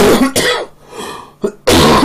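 A man coughing loudly, two harsh coughs: one at the start and another near the end.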